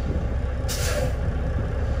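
Truck air brakes exhausting with one short hiss about two-thirds of a second in as the pumped service brake is let off, over a diesel engine idling steadily. The brakes are being pumped to bleed the system air pressure down toward the low-air warning point.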